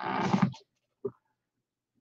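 A man's voice drawing out a word for about half a second, a short faint vocal sound about a second in, then dead silence.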